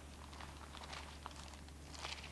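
Faint rustling and light crinkles of thin paper pages being turned, over a steady low electrical hum.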